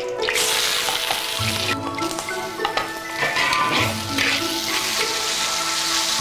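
Pork sizzling in hot oil in a wok, starting a fraction of a second in and going on steadily as it is stirred with a spatula. Background music with a low pulse about every two and a half seconds plays over it.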